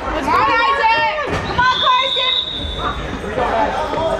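High-pitched voices of children and spectators calling out during an indoor youth soccer game.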